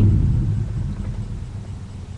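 Low engine rumble of a motorcycle passing in the street, fading away steadily as it goes.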